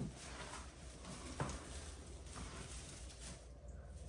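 Faint rustling of artificial Christmas tree branches being handled, with a light click near the start and another about a second and a half in.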